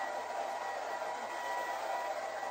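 Handheld hair dryer running steadily, a constant rushing hiss of air with a faint steady whine.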